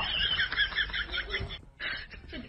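A person laughing in a rapid run of short, high-pitched giggles, about six or seven a second, breaking off shortly before the end.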